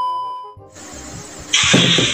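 Edited transition sound effect of a TV test pattern: a steady high-pitched test-tone beep that fades out within the first half second, then TV static hiss, then a louder burst near the end.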